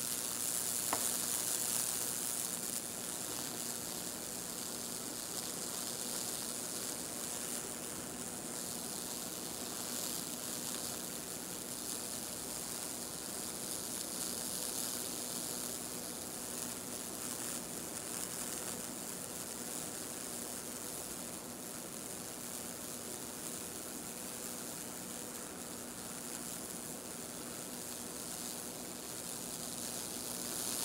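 High-voltage current from a neon sign transformer arcing through baking-soda-soaked wood between two nails, sizzling and crackling steadily as it burns Lichtenberg figures into the board. There is a steady hum underneath.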